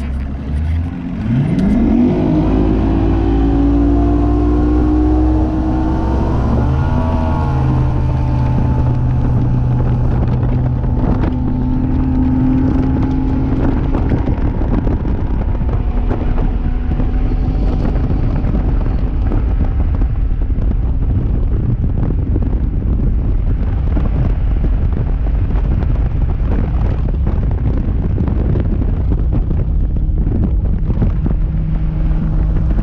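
Bass boat outboard motor at wide-open throttle: its pitch climbs steeply about a second in as the boat launches, wavers briefly around seven seconds in, then holds steady at top speed. Wind buffeting the microphone grows over the engine at speed.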